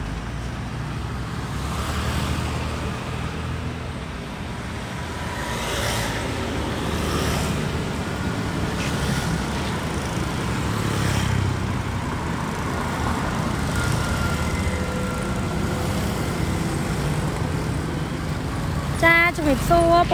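Steady street-traffic background: a continuous low rumble of passing road vehicles with no single event standing out.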